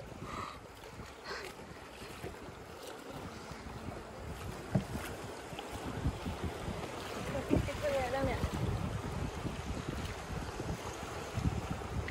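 Fast-flowing river water rushing around a kayak, with wind buffeting the microphone and occasional paddle splashes.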